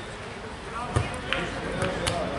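A football kicked with a single dull thud about a second in, among distant shouts from players and spectators on the pitch.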